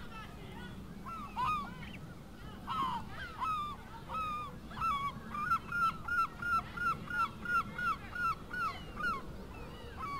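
Large birds calling outdoors: scattered harsh calls at first, then a fast run of about three calls a second in the second half.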